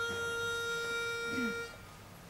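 Pitch pipe blown once: a single steady reed note, held for about a second and a half and then stopped, giving the quartet its starting pitch.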